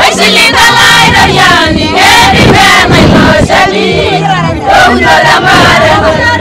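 A group of women singing together in chorus, many voices overlapping, loud throughout.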